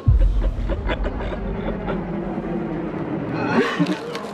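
Horror trailer sound design: a deep bass boom hits as the shot cuts, then a low rumbling drone runs on under scattered clicks and a held tone that slowly sinks in pitch, building again near the end.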